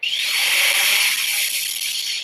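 Skydio quadcopter drone's rotors spinning up: a quick rising whine that settles into a steady, loud, high-pitched buzz.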